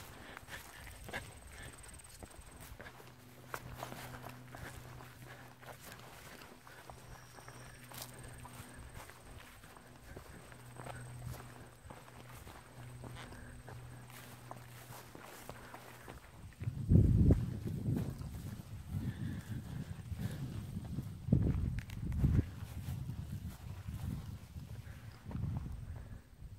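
Footsteps through grass and over stone, over a faint steady low hum. From about two-thirds of the way in, irregular gusts of wind buffet the microphone with loud low rumbles.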